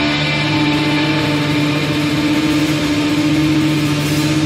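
A distorted electric guitar chord held and ringing out steadily as a drone, with no drums, in a break in a hardcore track.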